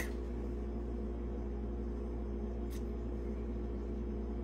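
Steady low hum of room background noise with a few faint steady tones, and one faint click about two-thirds of the way through.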